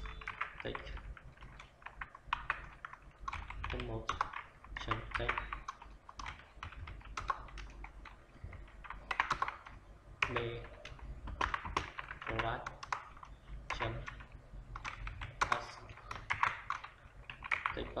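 Computer keyboard typing in uneven bursts of quick key clicks.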